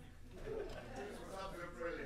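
Faint, indistinct voices of people talking in a small room, with no clear words.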